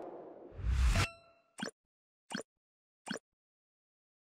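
Channel logo ident sound effect: a swish building into a low hit with a bright ding that rings on briefly about a second in, followed by three short pops spaced well apart.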